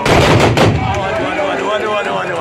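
A volley of black-powder muzzle-loading rifles fired together by a line of charging horsemen. The shots merge into one loud, ragged burst lasting under a second, with a second crack near its end. Crowd voices follow.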